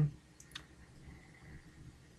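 Two computer mouse clicks about half a second in, close together.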